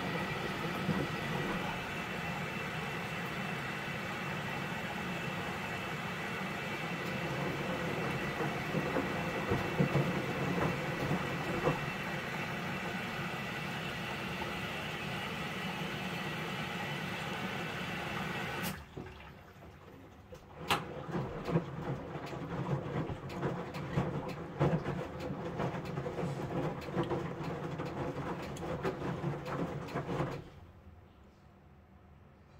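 Samsung WW75TA046TE front-loading washing machine mid-cycle: a steady rush of water and machine noise for the first two-thirds, which cuts off suddenly. After that the drum tumbles wet laundry with irregular soft knocks and sloshing.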